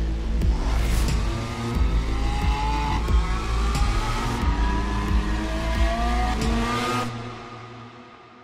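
Lamborghini Sián's V12 engine revving hard, climbing in pitch again and again as it pulls through upshifts, over a film score with heavy bass. It all cuts off about seven seconds in, leaving a fading echo.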